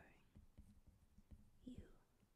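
Faint ticks and light scratches of a stylus tapping and sliding on a tablet's glass screen during handwriting, with a soft whispered word near the start and another near the end.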